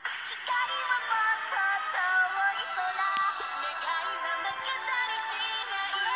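Japanese anime idol pop song with female vocals singing a melody over the backing. The singing and full music come in sharply right at the start.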